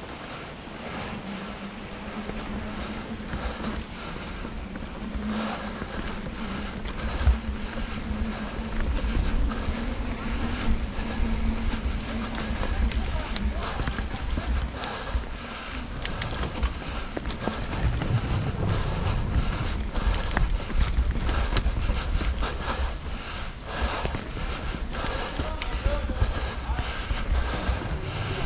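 Hardtail mountain bike ridden down a dirt forest singletrack: tyres rolling over dirt and roots, a low rumble of wind on the microphone, and frequent knocks and clicks from the bike. A steady hum runs through the first half.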